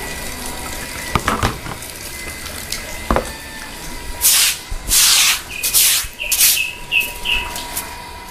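Shallow floodwater being cleared off a concrete floor. There are a couple of sharp knocks in the first half, then from about halfway a run of short swishes as the water is pushed across the wet floor.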